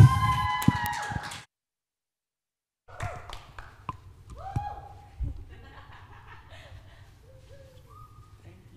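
A man's amplified voice in a large hall ends and rings out briefly, then the sound cuts out completely for about a second and a half. After that comes faint stage and hall sound: a low hum, a few light knocks, and faint off-mic voices.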